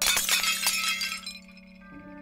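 Glass shattering: a sudden crash with a spray of tinkling pieces that dies away within about a second and a half, over orchestral music holding a steady low drone.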